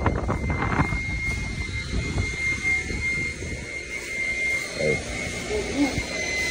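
A machine running steadily, a low drone under a constant high-pitched whine, with brief voices near the start and the end.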